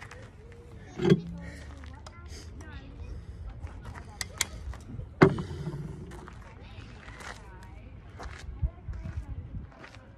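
Indistinct background voices over a low steady rumble, broken by two sharp knocks, one about a second in and a louder one about five seconds in.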